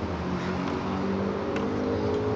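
A motor vehicle's engine running, a steady low drone whose pitch creeps slightly upward, with a faint click about one and a half seconds in.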